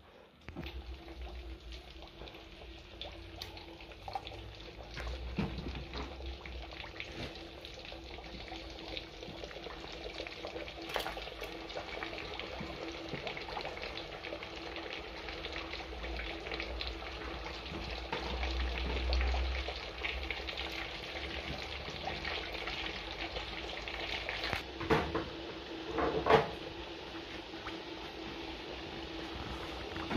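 Pieces of smoked pork sizzling and crackling steadily in hot lard in a cast-iron cauldron, starting about half a second in. Near the end come two louder knocks.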